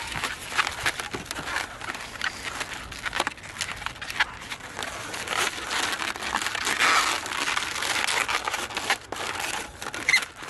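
Long latex twisting balloons being twisted and handled into a module, the rubber rubbing on rubber in a dense run of small clicks and rubbing noise.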